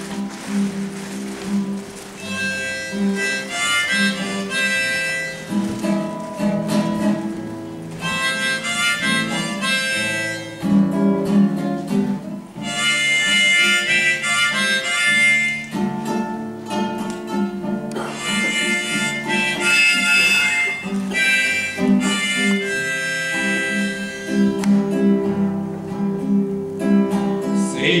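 Instrumental introduction on a nylon-string acoustic guitar, with a harmonica playing the melody over the guitar chords in several phrases separated by short gaps.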